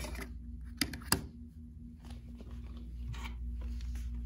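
A clear acrylic quilting ruler and fabric being handled on a cutting mat: two light taps about a second in, then soft rustling, over a steady low hum.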